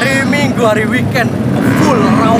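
A man talking over a steady low engine hum, typical of motorcycles idling nearby.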